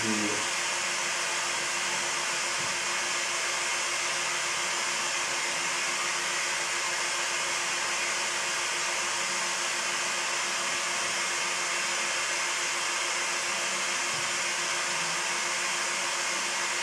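A steady hiss that does not change, with a steady low hum beneath it.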